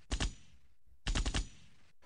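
Two short bursts of machine-gun fire used as a sound effect, one just after the start and one about a second in, each a rapid string of shots.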